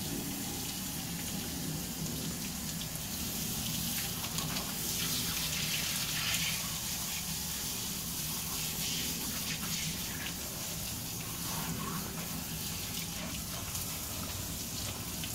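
Water spraying from a garden hose onto a Rhodesian Ridgeback's coat and splashing on the shower pan as the dog is rinsed: a steady hiss that grows a little louder around the middle.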